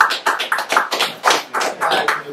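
A small group of people clapping, a short round of applause at about four or five claps a second.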